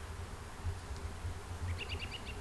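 Outdoor ambience with a low rumble, and near the end a quick run of short, high chirps from a small bird.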